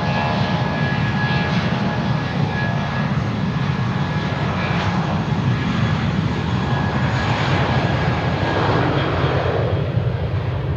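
Airbus A320's twin IAE V2500 turbofan engines running at high thrust during the takeoff roll: a loud, steady, deep roar with a thin whine on top.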